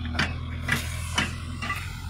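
Backhoe loader's diesel engine running steadily, with sharp knocks about twice a second over it; the engine hum drops away at the very end.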